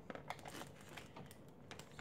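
Faint crinkling of a soft plastic facial-wipes pack with scattered small clicks as it is handled and its plastic flip-top lid is worked open.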